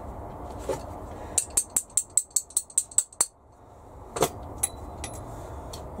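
Hand pop-rivet gun being worked: a quick run of about ten sharp metallic clicks, roughly five a second, followed by one more sharp click a second later.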